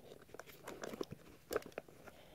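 Faint plastic clicks and handling sounds from a two-wheel roller skate shoe as its rear heel wheel is pushed in with the release button and retracts into the sole, with a couple of sharper clicks about one and a half seconds in.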